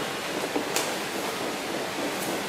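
A steady, even hiss of background noise, with a faint click about three-quarters of a second in.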